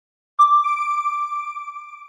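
A single bell-like electronic chime strikes about half a second in after a moment of silence, then rings on and slowly fades away.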